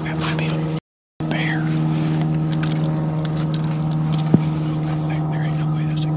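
A vehicle engine running at a steady pitch, cut by a brief total dropout about a second in, with a single sharp click a little after four seconds.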